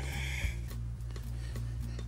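Quiet background music with steady low sustained notes.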